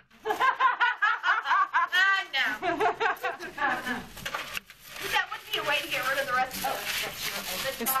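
Several people talking over one another and laughing in a room, indistinct chatter with no clear words.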